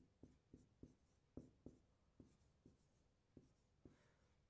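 Dry-erase marker writing on a whiteboard: a faint string of short strokes and taps, about three a second, irregularly spaced.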